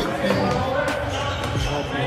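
Basketballs bouncing on a gym floor in a large echoing gym, with a couple of sharp bounces standing out, and voices talking in the background.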